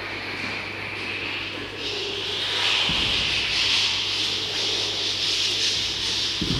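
A sustained rasping friction noise, like something being rubbed, that swells about two seconds in and holds, with a soft low thump about three seconds in.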